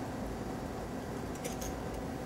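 Steady low room hum, like ventilation or air conditioning, with a couple of faint light clicks about one and a half seconds in.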